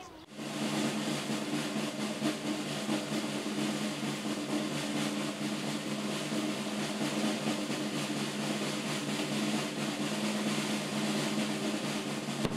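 A continuous snare drum roll with a few low held notes sounding underneath it.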